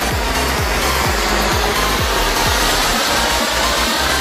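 Anaar fountain firework burning with a steady, dense hiss as it sprays sparks, over electronic dance music with a steady beat of about two kicks a second.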